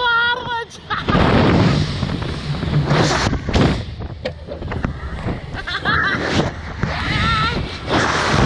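Wind rushing over the ride camera's microphone in surges as the reverse-bungee capsule swings. Two riders are whooping and laughing in short bursts, with one held cry at the start and more laughter near the end.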